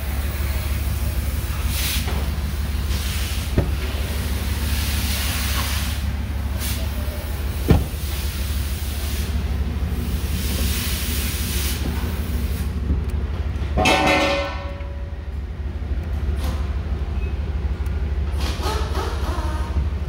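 A 2012 Ford F-150's 5.0-litre V8 idling steadily, with rustle and handling noise over it, a sharp click about eight seconds in and a short creak around fourteen seconds in.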